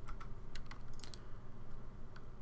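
Computer keyboard keys being tapped: several separate clicks spaced unevenly, over a low steady hum.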